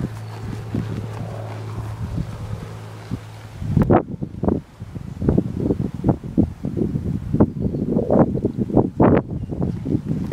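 Wind buffeting the phone microphone, with a steady low hum for the first few seconds. From about four seconds in, dull irregular thuds of a cantering horse's hooves on arena sand grow louder as the horse comes in to a jump.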